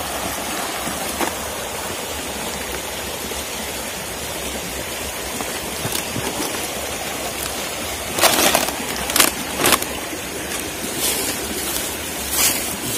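A rushing rocky stream runs steadily as an even hiss. From about eight seconds in, a few sharp crackles and snaps of dry twigs and leaf litter being broken and pushed through.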